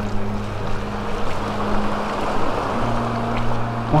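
Small waves washing onto the sand with a breeze, heard as a steady rushing noise. A steady low hum runs underneath and steps up slightly in pitch nearly three seconds in.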